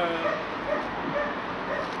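Short, faint animal calls repeated about four times in two seconds, over a steady background hiss.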